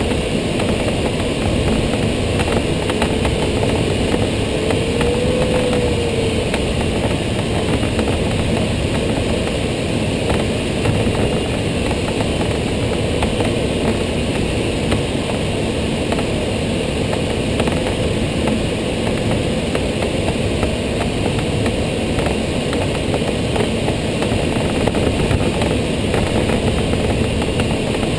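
Steady rush of airflow over a Schempp-Hirth Duo Discus glider, heard from inside the closed cockpit while flying low and fast, with a faint tone that rises and falls briefly about five seconds in.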